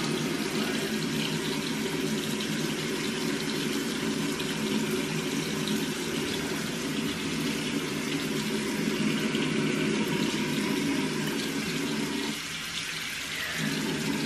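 A bathroom tap running steadily, water splashing into the sink. Near the end it goes quieter for a moment.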